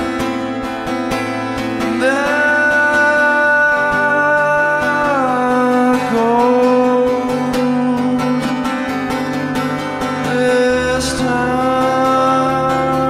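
Folk song: acoustic guitar strumming under a wordless sung line of long held notes that enters about two seconds in and slides down in pitch a few times.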